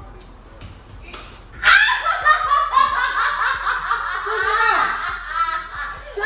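People laughing hard, starting about a second and a half in and carrying on in waves.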